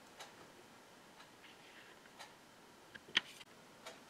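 A quiet room with a few faint ticks, the first three about a second apart, and a sharper click about three seconds in.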